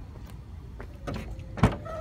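Suzuki Vitara tailgate latch released by hand, with low handling noise and then one sharp click near the end as the latch lets go.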